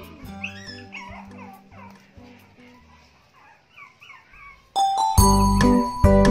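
Toy poodles whining in short, high-pitched calls over quiet background music. The music gets much louder about five seconds in.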